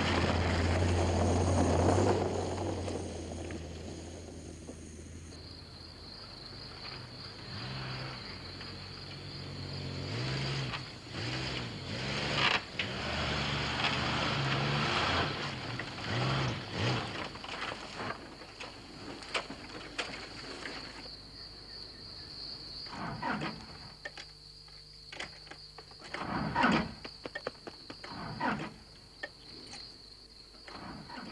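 A Jeep Wagoneer's engine drives past loudly on a dirt track, its sound falling away after a couple of seconds. It then labours and revs unevenly as the truck pushes off-road through brush. Scattered knocks and scrapes come in the second half.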